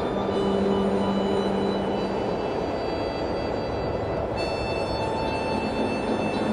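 Harmonica playing slow, long-held notes that change about two seconds in and again near the end, over a steady rushing noise.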